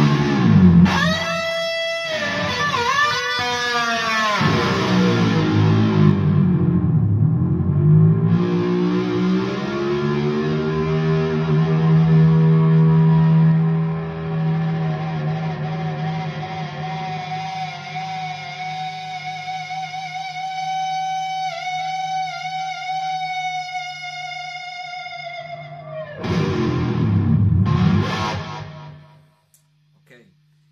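Distorted Kramer electric guitar played through an EVH amp head: dipping pitch bends at first, then long held notes kept ringing by amp feedback, with a brief wavering wobble partway through. A short burst of playing comes near the end, then the sound cuts off.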